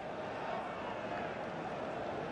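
Steady crowd noise in a football stadium, an even background hum of spectators with no single cheer or call standing out.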